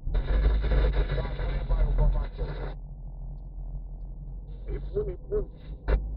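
Steady low engine and road hum in a moving car's cabin. A voice is heard over it for the first two to three seconds, cutting off abruptly, with a few short voiced sounds near the end.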